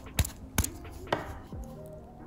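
About four sharp knocks and clacks of a phone and a tight plastic repair mold being handled and pressed together on a workbench.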